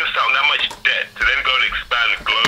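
A man talking continuously over a phone line, his voice thin and narrow, cut off in the highs like telephone audio.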